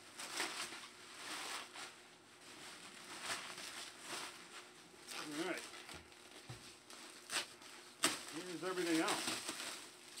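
Plastic bubble wrap crinkling and rustling as it is handled and pulled back, with two sharp crackles in the second half.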